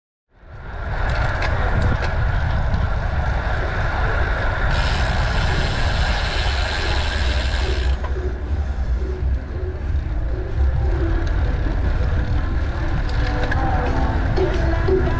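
Wind buffeting the action camera's microphone on a moving road bike, with tyre and road noise and the ticking of the rear hub's freewheel. The sound comes up just after the start. For about three seconds in the middle, a high hiss joins in and then cuts off suddenly.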